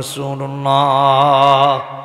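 A man's amplified voice holding one long chanted note at a steady pitch, in the melodic intoning style of a Bangla waz sermon. It breaks off shortly before the end.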